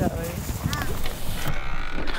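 A voice briefly in the first second, then an abrupt change about one and a half seconds in to a quieter, duller background.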